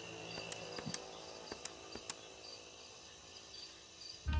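Crickets chirping faintly in a night ambience, a thin high chirping that repeats evenly, with a few soft clicks in the first two seconds.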